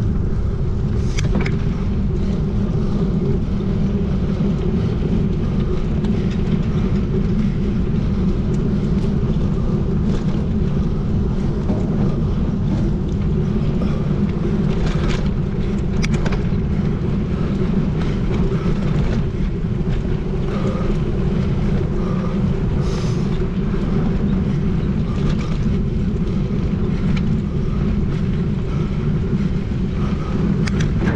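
Riding noise of a mountain bike at speed on a dirt forest road: a steady rumble of tyres on the ground and wind on the action camera's microphone, with a few short rattles and clicks.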